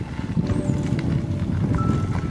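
Rough, uneven rumble of wind buffeting the microphone and the rattle of a bicycle rolling over a dirt road, with a few faint short tones over it.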